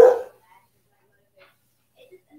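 A dog barks once, a single short loud bark right at the start.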